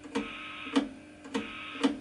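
Audio output of a homebrew 40m SSB superhet receiver with its input on a dummy load: a low, faint hiss with a few thin steady tones and a soft click about every 0.6 s. The low hiss shows the receiver producing little internal noise.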